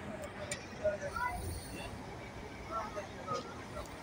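Mercedes-Benz intercity coach pulling into a parking bay, its diesel engine a low, faint rumble, with scattered distant voices.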